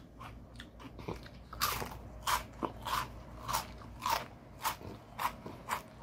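A person chewing a crunchy ring-shaped snack close to the microphone: soft crunches at first, then louder, regular crunches about every half second.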